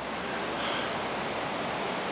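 Steady outdoor rushing noise of wind mixed with a river running in spate below.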